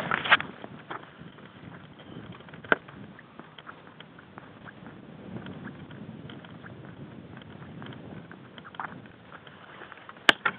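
Handling noise on a small sunglasses-camera microphone: rustling and rubbing, with a knock just after the start and a sharp click a little under 3 s in. No motor is running.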